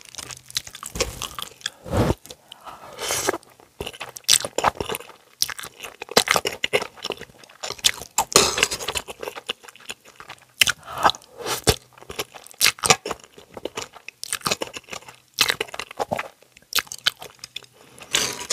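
Close-miked chewing of cheesy instant ramen noodles: irregular wet clicks and short crunchy bursts, with chopsticks working the noodles in the pan.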